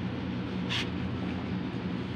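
Steady low machinery hum in the background, with a brief hiss about three-quarters of a second in.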